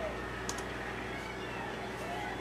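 A single keyboard key click about half a second in, over a steady low electrical hum, with faint arching high-pitched calls in the background.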